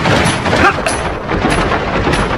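Loud, dense rushing noise with sharp booming hits every half second or so: dubbed action sound effects in a martial-arts TV drama, with a short vocal sound about two-thirds of a second in.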